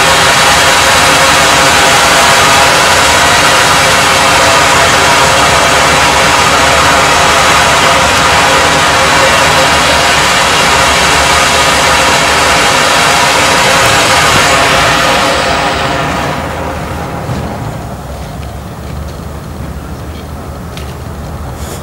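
Firework fountain from a Lesli Bestseller 'Big Show' pack spraying sparks with a loud, steady rushing hiss. It dies away about three quarters of the way through as the fountain burns out.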